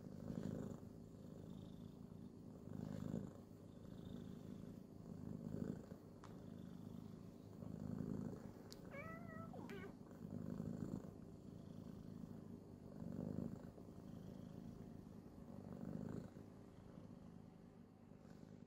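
White Maine Coon kitten purring quietly while held close, a low steady purr that swells and fades about every two and a half seconds with its breathing.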